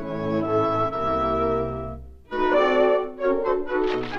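Orchestral cartoon music led by strings. A held phrase fades out about two seconds in, and a new phrase of shorter, livelier notes follows.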